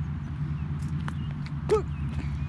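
Footsteps on a wet gravel path while stepping around puddles, over a steady low rumble. There is a short vocal sound near the end.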